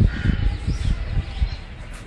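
A crow cawing near the start, over low rumbling noise.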